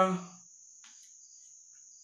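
A man's voice trailing off on a drawn-out 'uh' in the first half-second, then a pause in which only a faint, steady high-pitched tone is heard.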